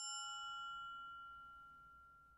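A single faint bell-like chime, struck once and ringing on with several clear tones that slowly fade away.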